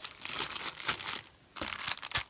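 Clear plastic bag of paper embellishments crinkling as it is picked up and handled, an irregular rustle with a quieter moment a little past halfway.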